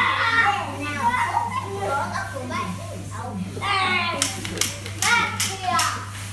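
Young children's high-pitched voices calling out and squealing as they play. A few sharp taps sound in the last two seconds, over a steady low hum.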